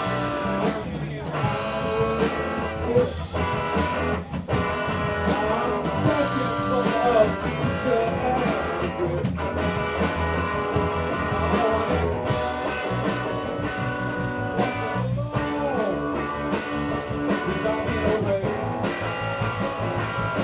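Live rock band playing an instrumental passage: electric guitar with bending notes over bass and drums, the cymbals coming in busier about halfway through.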